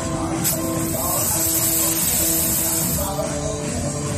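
Wrestling entrance music playing, with a loud hiss from a stage fog machine blasting from about half a second in until about three seconds in.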